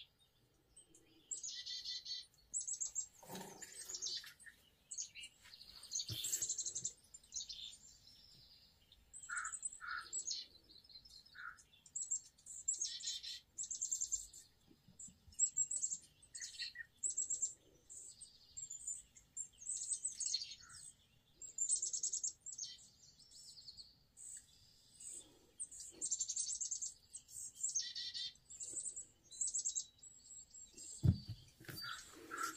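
Small birds chirping and twittering in frequent short high bursts, with a few lower whistled notes about ten seconds in, played from a bird video through a TV's speakers.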